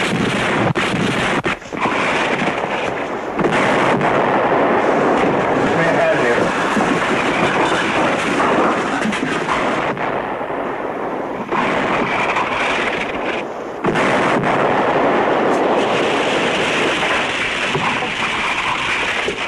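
Artillery barrage on a wartime TV soundtrack: shell explosions and gunfire in a dense, continuous din, cut by many sharp reports. It eases briefly about ten seconds in, then comes back at full strength.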